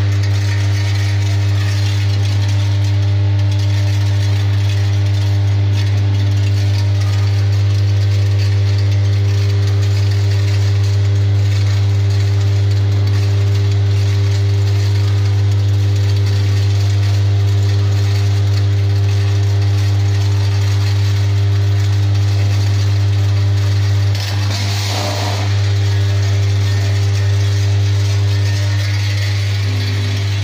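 Vibrating channel trays of a 24-channel tablet-counting sachet packing machine running, a steady low hum with a faint rattle of the small parts moving along the channels. The hum dips briefly about three-quarters of the way through, with a short hiss.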